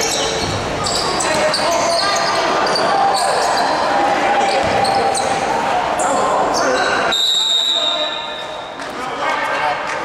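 Basketball game in a gym: sneakers squeaking on the hardwood court, a ball bouncing, and voices chattering in the echoing hall. A longer high squeal comes about seven seconds in, followed by a short lull.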